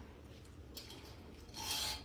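Fabric of hanging garments rustling and rubbing close to the microphone as they are handled and brushed past, with a brief faint rub and then a louder swish near the end.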